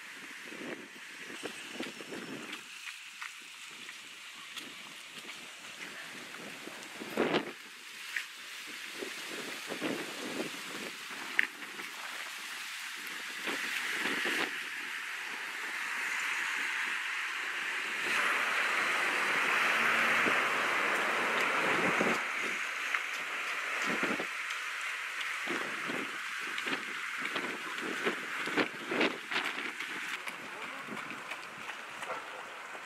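Wind buffeting an outdoor camera microphone in short gusts, with a hiss that swells louder in the middle and a couple of sharp knocks.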